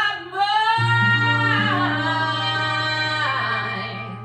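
A woman singing live, holding one long note with vibrato that eases off near the end, over a steady low backing note.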